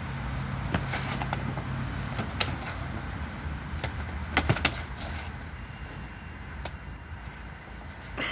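Inflatable plastic toy hammers being swung and knocked together: a few short sharp hits, the loudest in a quick cluster of three about four and a half seconds in, over a steady low vehicle hum.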